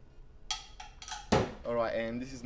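A short knock or clatter about halfway through, then a man's voice speaking briefly.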